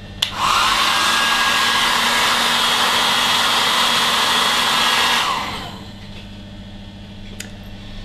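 Handheld electric hair dryer blowing, a loud steady rush of air that starts just after the beginning and runs about five seconds, then winds down as it is switched off.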